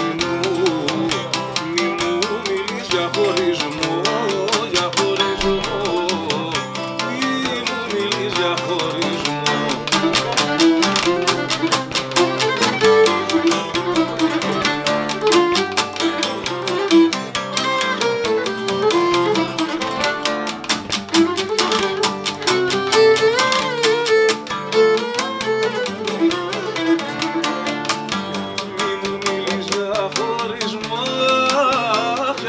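Cretan lyra bowing a syrtos melody over laouto and acoustic guitar, which strum a steady dance rhythm.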